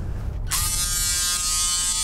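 A handheld electric kitchen appliance's small motor buzzing steadily, switched on abruptly about half a second in.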